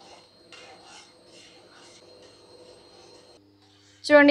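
A spoon stirring hot milk in a pan as the custard mixture goes in: faint rubbing strokes, about two a second, that stop shortly before the end.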